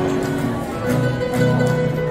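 Acoustic guitars and a smaller plucked string instrument playing an instrumental passage together, with regular plucked and strummed attacks under held notes.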